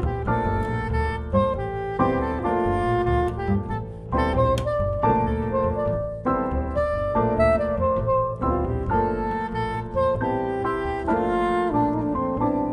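Live jazz: a soprano saxophone plays a melody of quickly changing notes over double bass accompaniment.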